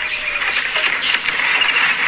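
Film soundtrack played through a phone's small speaker held up to a studio microphone: a stretch of steady, thin-sounding noise without dialogue, between lines of the film.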